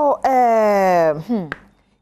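A person's voice holding one long drawn-out vowel for about a second, its pitch sliding slowly downward. It is followed by a short rising syllable and a brief pause.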